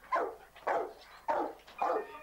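A dog barking four times in a steady run, about one bark every 0.6 seconds, each bark dropping in pitch.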